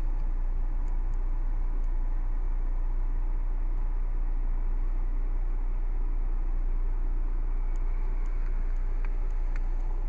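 Steady low rumble and hiss inside a car cabin, even throughout, with a few faint clicks near the end.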